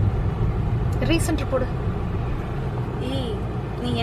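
Steady low rumble of a car driving along a road, heard inside the cabin, with brief snatches of voices.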